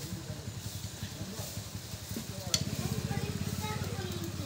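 A screwdriver scraping and working around the oil-seal seat in the hub of a metal motor end cover, a fast, even scratching that grows louder in the second half, with one sharp click about two and a half seconds in.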